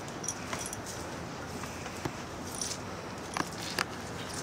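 A pit bull leaping at and tugging a rope toy on a spring pole, making a few scattered light clicks and jingles over a steady hiss.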